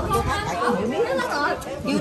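Several people talking and chatting over one another in Vietnamese.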